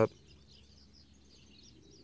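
Quiet outdoor background: a faint steady hiss with scattered faint high chirps.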